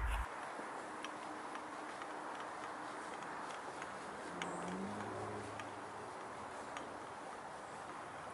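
Quiet outdoor ambience: a steady background hiss with faint scattered ticks and a brief faint low hum about halfway through.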